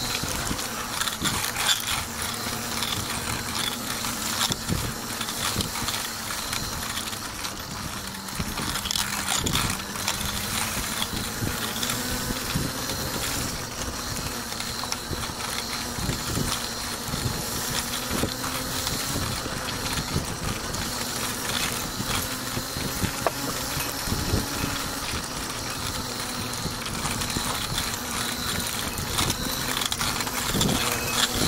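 Outdoor ambience with a steady low hum of an idling vehicle engine, with scattered light knocks and taps.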